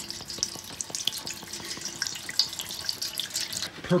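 Purple degreaser poured in a steady stream into a stainless steel kitchen pan, splashing as the pan fills.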